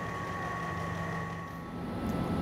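Steady hum of running machinery, with a thin high whine that fades out near the end.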